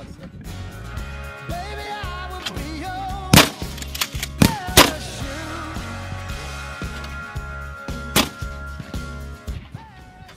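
Background song with singing and a steady beat, over which a shotgun fires four sharp shots: one about three seconds in, two in quick succession about a second later, and one more near the end.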